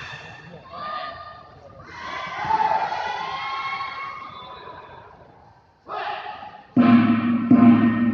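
Voices echo in a large hall, then about seven seconds in a match gong is struck loudly twice in quick succession and rings on, the signal that the pencak silat round is starting.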